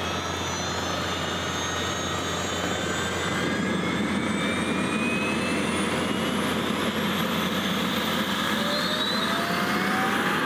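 Rolls-Royce Tornado APU gas turbine in a modified Robinson R22 spooling up on its automatic start: a steady jet-engine rush with several whines slowly rising in pitch as it grows a little louder. The turbine is accelerating after light-off, a start the pilot judges very good.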